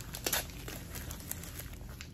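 Faint paper rustling and a few light clicks from handling a gift-wrapped seasoning container, with the clicks coming in the first half-second.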